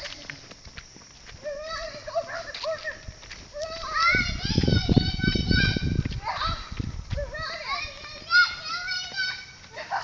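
Children's high-pitched voices calling out in short bursts, without clear words. Between about four and seven seconds in, a low rumble and knocking from the camera being jostled at a run.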